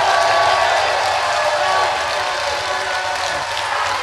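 Large audience applauding and cheering: dense, sustained clapping with a few shouts and whoops over it, easing slightly about halfway through.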